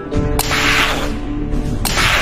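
Two cartoon sci-fi gadget sound effects over background music, each a sharp click followed by a short hissing whoosh. The first comes about half a second in and the second near the end.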